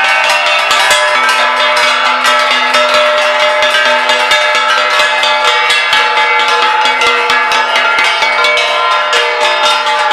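Many hand-held brass plates beaten with sticks in quick, overlapping strokes, a continuous loud metallic clanging with ringing tones.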